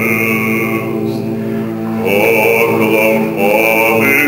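Russian male vocal ensemble singing unaccompanied: the lower voices hold sustained chords beneath a solo voice. The solo line drops out just under a second in and comes back in about two seconds in.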